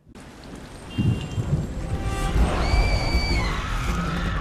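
Dramatic TV-news transition sound effect with music. A sudden noisy rush starts from silence and swells about a second in, with a deep rumble underneath and a held electronic tone in the middle.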